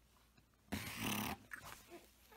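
Infant's short, rough growl-like vocalization, loud and close to the microphone, lasting about half a second, followed by a couple of brief softer sounds.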